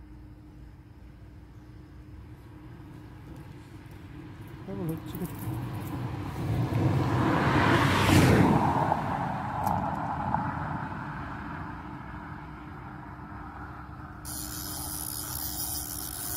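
A car driving past: the sound builds from about four seconds in, is loudest around the middle, then fades away. Near the end a steady hiss sets in abruptly.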